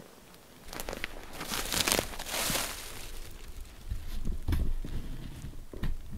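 Footsteps on the forest floor with fern fronds rustling and brushing against legs as someone walks through them. The rustling is strongest in the first half, and heavier low footfalls come later.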